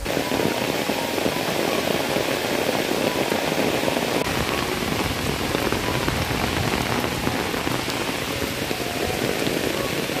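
Heavy rain falling steadily, a dense, even hiss made of many fine drop ticks.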